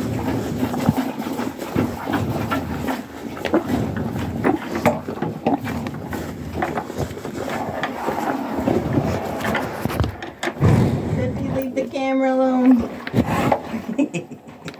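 A cow nosing and licking right against a phone's microphone: close, irregular snuffling, wet mouthing and rubbing scrapes.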